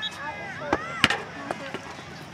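A soccer ball kicked during play, with two sharp thuds about a second in, the second louder. Raised voices of players and spectators call out around them.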